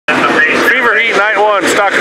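Continuous speech from the track announcer over the loudspeakers.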